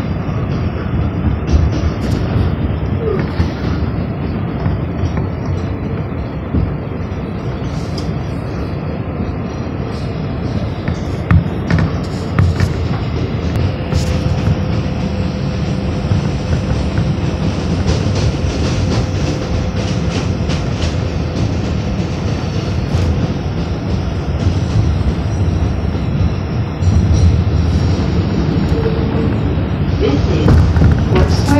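New York City Subway 7 train running on an elevated track, heard from inside the car: a steady rumble and rattle of wheels on rail, with a faint steady whine through the middle stretch. It grows louder near the end.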